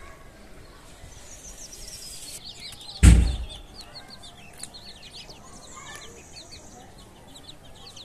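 Young chicks peeping repeatedly, many short, high cheeps that fall in pitch. A loud thump comes about three seconds in.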